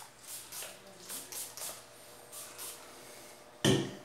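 Several short, faint hisses from a perfume bottle's pump atomiser spraying the fragrance, irregularly spaced over the first three seconds. A brief vocal sound comes near the end.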